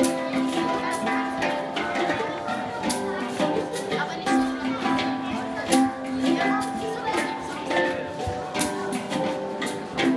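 An ensemble of handpans played by hand: several steel drums struck in a busy, calypso-like rhythm, their notes ringing on and overlapping, with sharp taps on top.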